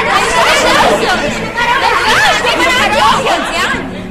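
Several voices talking over one another at once in a loud, continuous babble.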